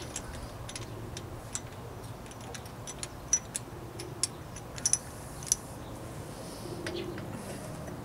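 Light metallic ticks and clicks from a spark plug wrench and spark plug as the plug is unscrewed from the cylinder head of a 48cc two-stroke bicycle engine: about a dozen short ticks, irregularly spaced.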